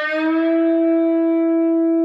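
Electric guitar with slight distortion: a single picked note bent up a whole step, its pitch rising at the start to match the target note two frets above and then held steady as it rings.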